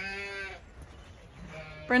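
A Zwartbles sheep bleats once, a single steady call about half a second long.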